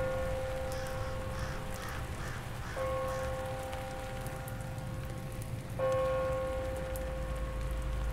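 Background music of three long held notes, a new one starting about every three seconds, over a steady soft hiss like rain.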